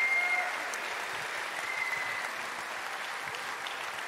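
Large audience applauding: dense, steady clapping.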